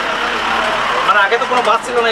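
A vehicle passing close outside the bus: a steady rush of noise through the first second, with a man's voice starting over it about halfway through.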